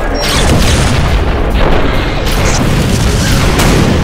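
Animated battle sound effects: a series of heavy explosion booms and blasts over background music.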